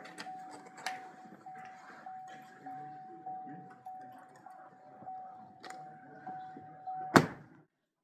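A 2013 Cadillac XTS's door-open warning chime repeats as an even single-tone ding, a little under twice a second. About seven seconds in the driver's door slams shut with a loud thud, and the chime stops.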